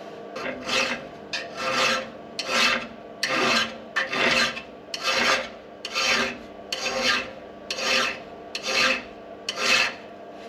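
A hand file working a forged steel gib key held in a vise, in slow, even strokes about one a second, eleven in all. The key is being filed to fit so that it binds in the pulley hub's keyway.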